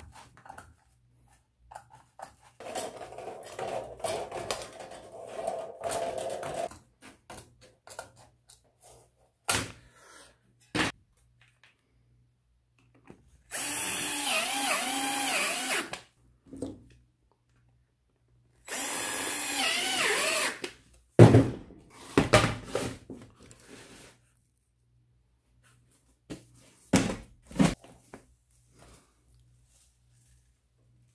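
Cordless drill running twice, about two and a half seconds and then two seconds, drilling into the embossed aluminium sheet of a fabricated pipe tee, its motor pitch rising and falling under load. Before that, a longer softer stretch of sheet-metal snipping and handling, and afterwards scattered knocks of the metal being handled.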